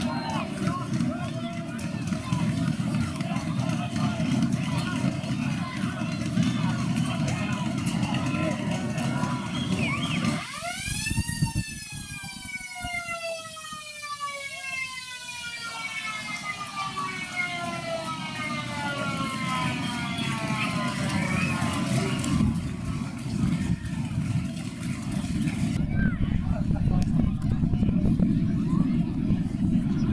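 A ground's motor-driven siren sounds about a third of the way in. It winds up quickly and then slowly falls in pitch as it runs down over about ten seconds, marking full time. Crowd and field noise can be heard before and after it.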